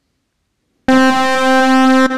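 A recorded AudioKit Synth One synthesizer note previewing as a sample: after a silent start, one held note near middle C comes in abruptly about a second in and holds steady, with a bright tone full of overtones.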